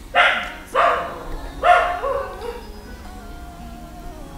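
A dog barking three times in about two seconds, set off by someone bothering it.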